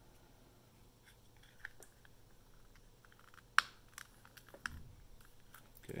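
Hands handling a small plastic earbud charging case: faint scraping and fiddling with a few small clicks, the sharpest about three and a half seconds in.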